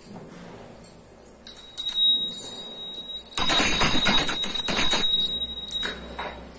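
Pooja hand bell being rung. A clear high ringing tone starts about a second and a half in, and from about halfway through the bell is shaken rapidly and loudly for nearly two seconds, then stops.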